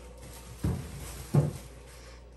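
Two short, dull knocks as groceries are handled and set into an old refrigerator, the second one louder.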